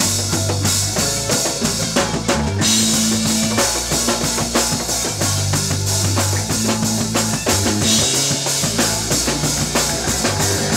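Live funk band playing an instrumental passage: a drum kit keeps a steady beat under an electric bass line and electric guitar, with no singing.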